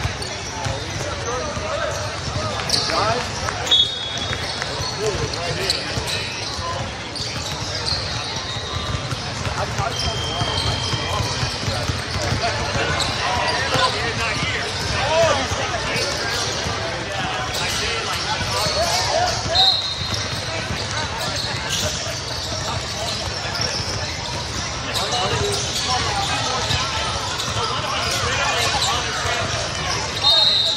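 Basketball game sounds in a large hall: a steady din of many indistinct voices, a ball bouncing on the court, and sneakers squeaking now and then.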